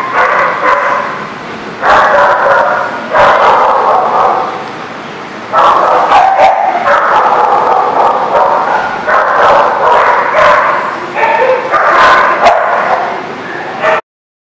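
Dogs vocalizing loudly while they wrestle in play: about eight drawn-out bouts of play growling and yowling, each one to two seconds long, with short pauses between them.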